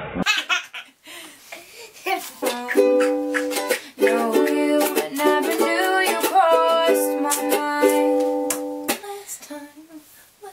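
Ukulele strumming chords, each strum ringing briefly, starting about two seconds in and stopping about a second before the end.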